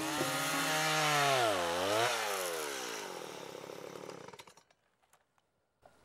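Stihl two-stroke chainsaw running, its pitch dropping as the revs fall, with a short throttle blip about two seconds in; then it winds down and stops about four and a half seconds in.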